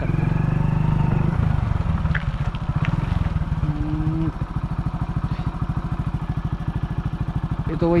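Motorcycle engine running, then dropping to a steady idle about three to four seconds in, its exhaust pulses distinct and even.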